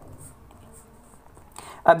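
Faint scratching of a pen writing short strokes on paper, with a brief louder rustle just before a voice comes in at the very end.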